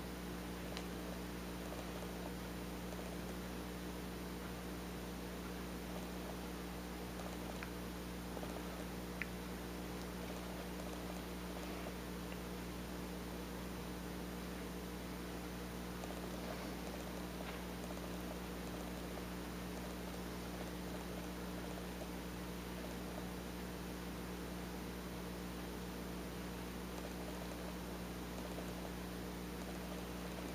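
Faint, soft scraping of a small knife paring shavings from a bar of soap, with a couple of tiny clicks, over a steady low hum.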